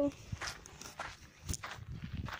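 Footsteps on rocky gravel ground: a few irregular crunching steps, with a sharper knock about one and a half seconds in.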